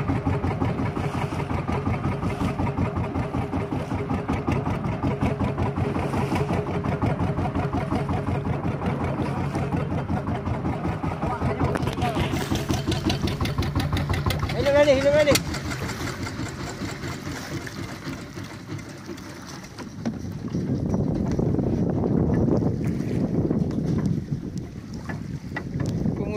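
A small fishing boat's engine running with a rapid, even pulse, then dropping away about fifteen seconds in. A short shout comes just as it drops. Water and wind noise fill the last few seconds.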